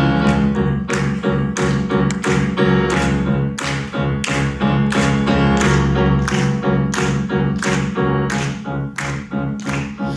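Grand piano playing the instrumental intro of a song, with sharp percussive taps marking a steady beat about twice a second.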